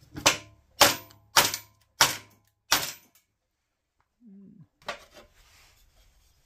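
Five sharp hammer blows about 0.6 s apart on a wooden block laid on the engine's aluminium crankcase side cover, driving its bearing into place.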